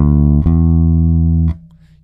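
Electric bass guitar playing two plucked notes, the second slightly higher and coming about half a second in, held and then muted at about a second and a half. In the key of D, these notes are the root and the major second (the 'major two').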